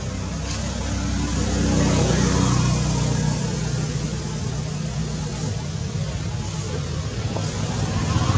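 A motor engine's low, steady rumble over outdoor background hiss, swelling a little about two seconds in.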